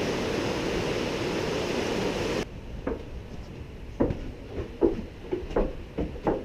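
Steady rush of river water from below a suspension bridge, cut off abruptly after about two seconds. A quieter room follows, with a run of irregular sharp knocks on wood, like footsteps and clunks on wooden boards.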